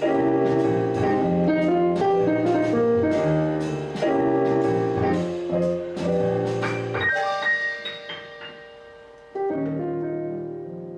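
Piano music generated by the Flow Machines style-imitation software: a steady run of chords over changing bass notes. About seven seconds in it thins to a few ringing notes that die away, then a fresh chord comes in near the end.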